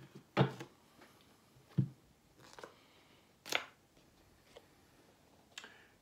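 A deck of tarot cards being cut and handled on a table: about five short taps and slaps of the cards, spaced a second or so apart.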